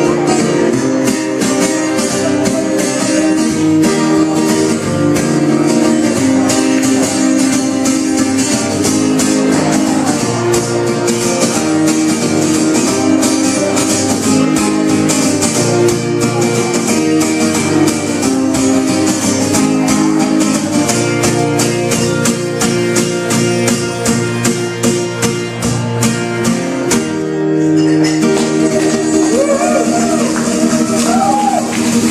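Acoustic guitar strummed fast and steadily in an instrumental passage of a live song, with a brief break in the strumming near the end before it carries on.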